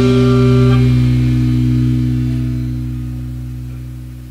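The final chord of a rock song, held on guitar and bass, ringing out and slowly fading away.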